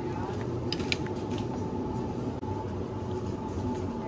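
A wire supermarket trolley rolling steadily over a tiled floor, with the wheels rattling, over a constant hum of store machinery.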